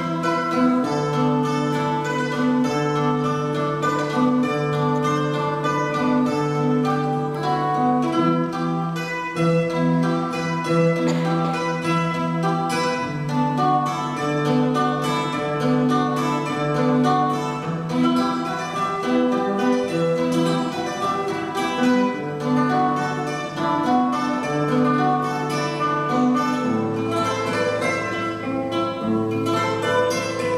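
Acoustic guitars and mandolins of a student tuna ensemble playing a song together, steady plucking and strumming under long held low notes.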